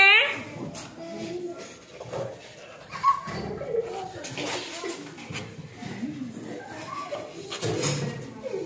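Several children talking and murmuring in scattered, quiet bursts, with a sharp knock about three seconds in.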